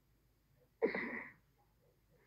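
A woman sneezing once: a single sudden burst a little under a second in, lasting about half a second.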